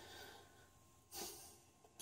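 Near silence with one soft breath a little over a second in.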